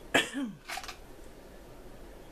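A woman coughs: a sharp burst with a falling voiced tail, followed by a shorter second burst.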